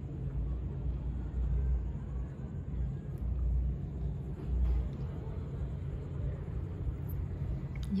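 Low, uneven rumble of wind buffeting the phone's microphone on the balcony of a ship under way, swelling and easing in gusts over a steady low hum.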